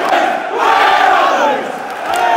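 Large football crowd in a stadium stand chanting together, loud and loudest in the middle.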